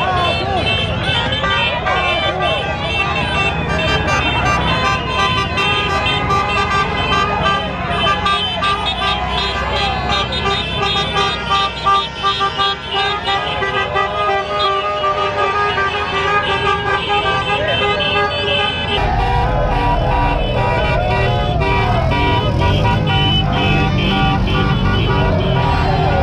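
Car horns honking over and over amid a street crowd shouting and cheering, with vehicles running. A low rumble grows louder about two-thirds of the way through.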